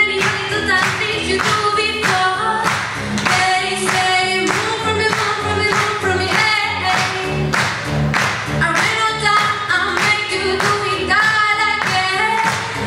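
A choir of mostly female voices singing a pop song in parts, over a steady beat of about two strokes a second.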